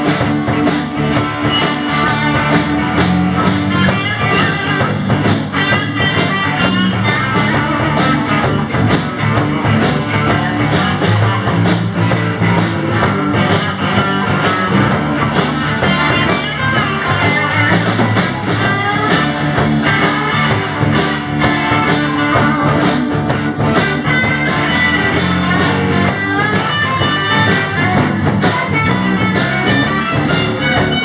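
Live rock and roll band playing: electric and acoustic guitars over a drum kit keeping a steady beat.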